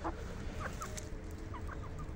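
Foraging hens clucking softly: a burst of clucks right at the start, then a few short, scattered clucks, over a steady low background rumble.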